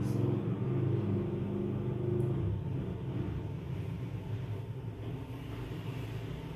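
A low, steady motor hum made of several held tones, rising and falling slightly in level.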